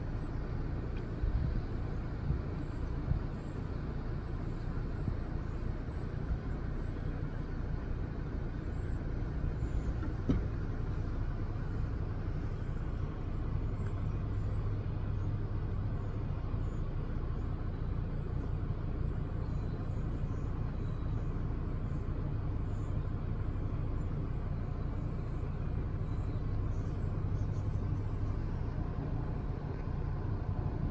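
A steady low engine rumble, like a vehicle running nearby, with faint high chirps above it.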